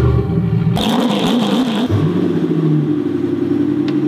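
Vehicle engines in quick succession: a low engine sound, then after a sudden change an engine revving with a wavering pitch, then an engine running more steadily.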